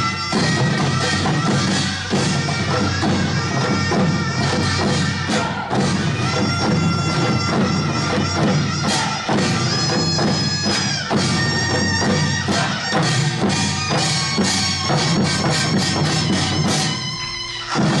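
Korean traditional music for the Jindo drum dance: buk barrel drums struck rapidly with sticks under a held, reedy wind-instrument melody. The music thins out about a second before the end, then a last drum stroke lands.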